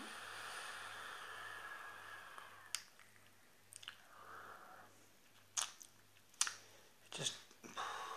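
A long draw on an e-cigarette: a steady airflow hiss for about two and a half seconds, ending in a click. A softer breathy exhale of vapour follows, then several lip smacks and mouth clicks near the end.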